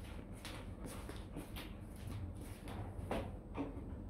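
Footsteps in sandals on a tiled floor, a few soft scuffs a second, walking away.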